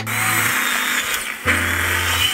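Electric miter saw running and cutting through a block of wood, a steady high hiss and whine that dips briefly near the end. Background music plays underneath.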